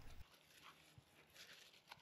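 Near silence, with a few faint, short rustles as florets are picked off a ripe sunflower head by hand.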